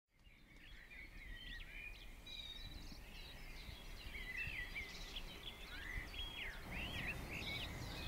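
Several small birds singing and chirping over each other, in short trills, whistles and sweeping notes, over a low background rumble. It fades in at the start.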